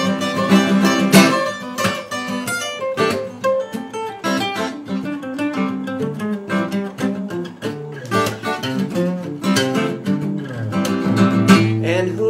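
Two acoustic guitars playing an instrumental passage: strummed rhythm chords under a picked lead guitar line.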